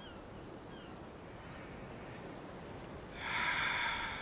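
Steady outdoor ambience with a few faint high chirps. About three seconds in comes a loud, breathy exhale lasting about a second.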